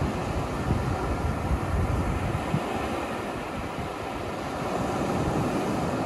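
Surf: small waves breaking and washing up a shell-covered beach, a steady rushing noise that swells a little near the end.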